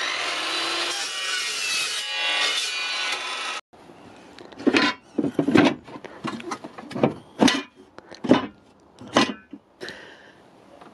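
Chop saw cutting through metal stock, a loud steady grinding whine with a slowly falling pitch for about three and a half seconds that cuts off suddenly. Then a string of short knocks and scrapes, roughly one a second, as the battery-box lid is handled.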